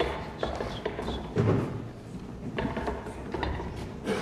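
Stage equipment being handled: a metal music stand and parts of a grand piano clicking, knocking and rattling, with one louder thump about a second and a half in.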